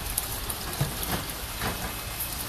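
Water running steadily through a trout hatchery's egg incubation trays, an even rushing noise with a few light clicks.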